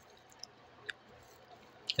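Near quiet, with a few faint wet mouth clicks from chewing a meat stick, three soft ticks spread across two seconds.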